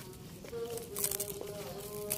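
A flying insect buzzing close by, a steady hum that shifts slightly in pitch, with a few faint clicks of plastic scissors working at a plant stem.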